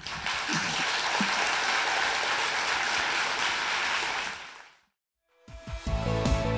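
Audience applauding steadily, then fading out about four and a half seconds in. After a brief silence, music starts near the end.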